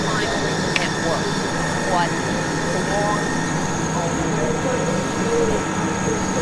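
A steady mechanical drone and hum with faint, indistinct voice fragments drifting over it.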